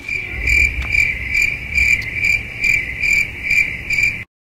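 Cricket chirping sound effect: a steady high trill pulsing a little more than twice a second, cutting in and out abruptly, the stock gag for an awkward silence.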